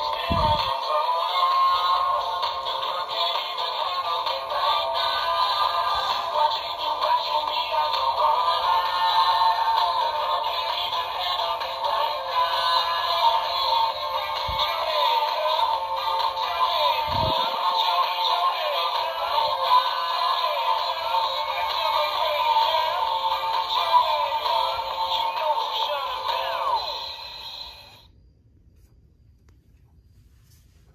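Animated plush mummy toy playing its song, a synthetic singing voice over music, through a small built-in speaker that sounds thin and tinny. The song stops about two seconds before the end.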